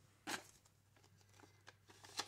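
Near silence, with one brief rustle of paper banknotes being handled a fraction of a second in and a few faint ticks near the end.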